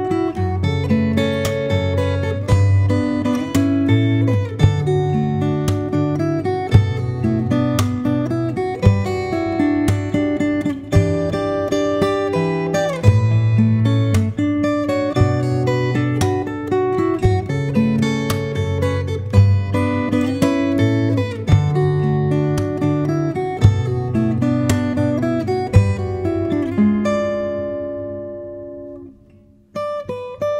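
Solo fingerstyle playing on a TYMA TG5BRS acoustic guitar: a picked melody over thumbed bass notes, with sharp percussive accents. Near the end a chord is left to ring and fades almost to silence.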